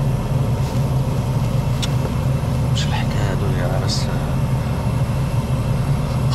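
Steady low rumble of a car engine idling, heard from inside the cabin, under some quiet speech.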